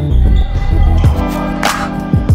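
Backing music with a heavy bass line and a drum beat: deep kick-drum hits and a sharp snare-like hit near the end.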